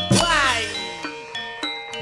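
Javanese gamelan playing busy accompaniment for a wayang kulit fight scene: ringing metallophone and gong notes over sharp clattering strikes, with tones that swoop up and down in pitch.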